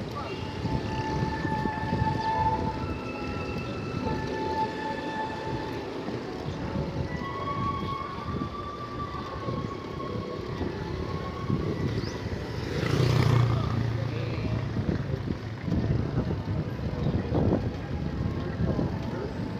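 Wind buffeting the microphone and road noise from a moving bicycle, rough and continuous. A few faint held tones come through in the first half, and a louder rush of noise swells about 13 seconds in.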